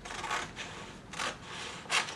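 Blue-handled scissors cutting through pattern paper, three short snips in quick succession.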